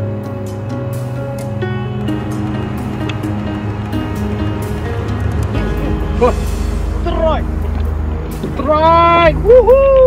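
Background music. About five and a half seconds in, a low steady rumble begins, joined by a man's excited shouts as a hooked giant snakehead pulls on his bent rod. The shouts are loudest near the end.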